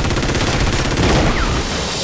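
Rapid, sustained automatic gunfire: a dense stream of shots with a heavy low rumble beneath, starting suddenly and running without a break.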